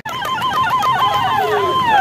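Electronic siren on a police jeep. It warbles rapidly at first, then goes into repeated wails that sweep down in pitch.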